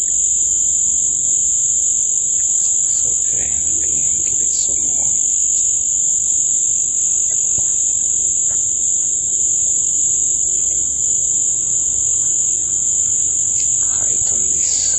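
A steady, high-pitched night insect chorus, loud and unbroken, with a second fainter band of trilling lower down, over a low background rumble.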